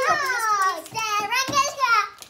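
A young girl's loud, high-pitched wordless cry: one long shriek that falls in pitch, then after a short break a second wavering one.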